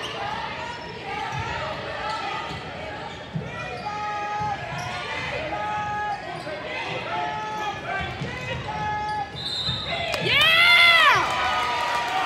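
Basketball dribbling on a hardwood gym floor with sneakers squeaking, over crowd chatter. About ten seconds in comes a loud, drawn-out shout that rises and falls in pitch.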